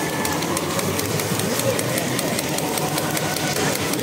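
Crowd applause: a dense patter of many hands clapping, steady throughout, over general crowd noise.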